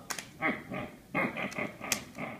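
A few short, rough vocal calls from an animal, between two sharp clicks of a plastic Blu-ray case being opened.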